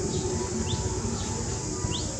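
Three short, high, rising animal chirps over steady background noise.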